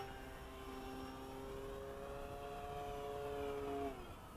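Electric motor and propeller of a Durafly Tundra radio-controlled floatplane running in a climb just after taking off from water: a steady whine that grows slightly louder, its pitch sagging near the end.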